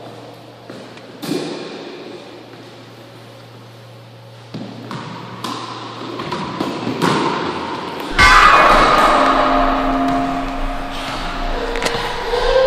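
Racquetball play echoing in an enclosed court: sharp single impacts with a ringing tail, about a second in and again near the middle. Then come more hits and thuds, and from about eight seconds in a louder, dense stretch of sound with held tones.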